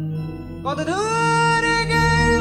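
Live jazz-fusion band music. About half a second in, a high lead voice slides up into a long held note over a steady low drone.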